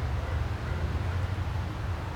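A steady low rumble with a faint hiss above it, the outdoor background noise of the yard, with no distinct events.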